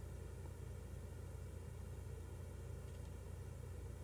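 Faint room tone: a steady low hum with light hiss and no distinct events.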